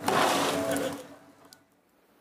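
Snow shovel scraping through snow on pavement: one push of about a second that fades out, followed by a faint click.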